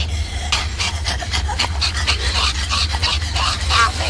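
Horror film sound effect of raspy, animal-like panting or snarling, about five harsh breaths a second, starting about half a second in, over a steady low hum.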